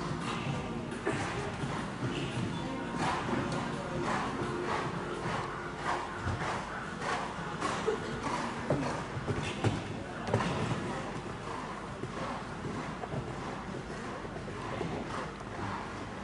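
Hooves of a showjumping horse cantering and jumping on the sand footing of an indoor arena, making irregular dull thuds. Voices and music in the hall sound behind them.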